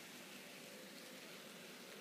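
Near silence: faint, steady hiss of room tone.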